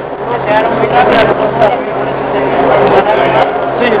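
Men talking in Spanish at close range, with other voices behind and a steady low hum underneath.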